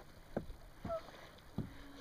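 Faint water lapping against a sea kayak's hull, with a few soft knocks.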